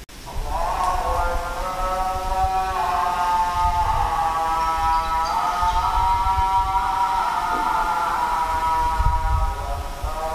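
A man's voice chanting long, drawn-out notes that step up and down in pitch, over a low rumble.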